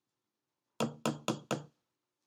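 Four quick hard knocks of a plastic graduated cylinder against a plastic beaker, tapping out the last drops of copper sulfate solution.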